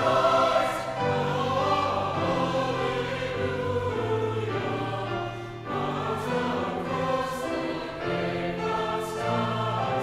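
Mixed church choir singing an Easter anthem, in sustained phrases separated by brief pauses for breath.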